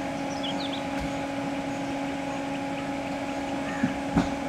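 Steady low hum of an idling vehicle engine. A few short, high bird chirps in the first second, and a brief knock near the end.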